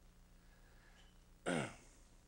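A man clears his throat once, briefly, about one and a half seconds in, over a faint steady low hum.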